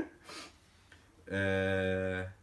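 A man's drawn-out hesitation sound, "eee", held on one steady pitch for about a second, starting a little past halfway after a short lull.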